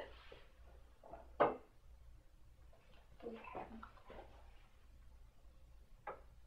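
A single sharp knock from a chiropractic drop table about a second and a half in, followed by faint indistinct sounds.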